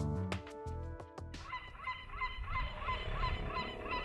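Instrumental music that stops about a second in, followed by a bird giving a rapid series of short, repeated calls, about three to four a second, over a low steady rumble.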